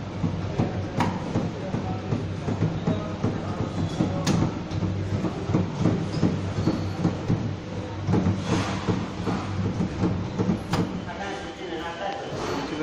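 Washing fastness tester (launderometer) running a test: its motor-driven rotor turns sealed steel cups loaded with steel balls and wash liquor. The result is a steady low hum under a continuous clattering rattle.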